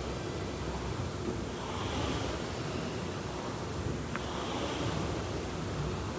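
Steady rushing noise, swelling softly about every two and a half seconds, with one brief high tone about four seconds in.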